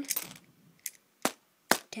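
Small plastic Lego pieces clicking against a Lego baseplate as they are handled and set down: four short, sharp clicks, the loudest near the end.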